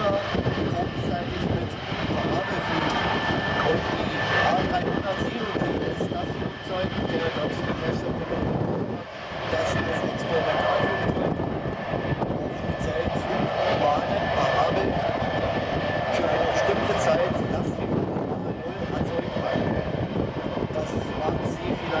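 Airbus A300 B2's turbofan engines running at taxi power: a steady rush of jet noise with a high, even engine whine over it.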